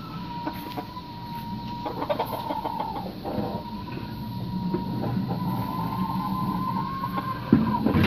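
Chickens clucking in the background under a thin, steady high tone that holds through most of the stretch, with a few light taps about two to three seconds in.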